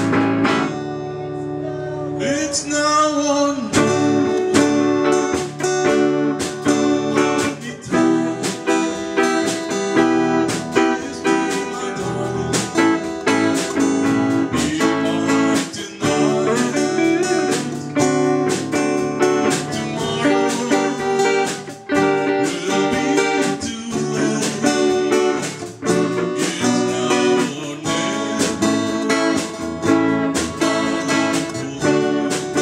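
A small live band playing a song together: acoustic guitar strumming chords over a drum kit with steady drum and cymbal hits, with singing.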